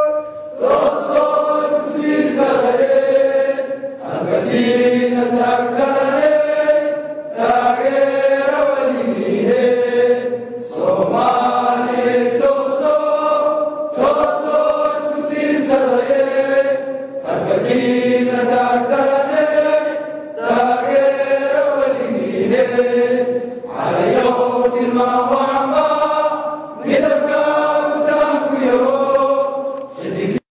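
A group of voices chanting in unison, repeating one short phrase about every three seconds.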